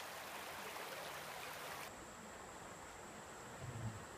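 Shallow river water running over rocks: a steady, faint rush of flowing water that becomes a little quieter about two seconds in.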